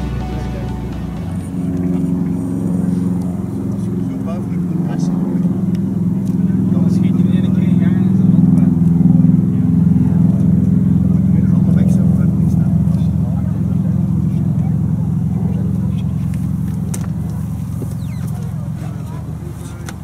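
An engine running steadily with a low drone that swells through the middle and slowly fades towards the end, with people's voices under it.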